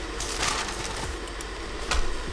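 Steady hum and hiss from a covered pan of water heating on an induction cooktop, with a brief rustle about half a second in and a sharp paper-bag crinkle near the end.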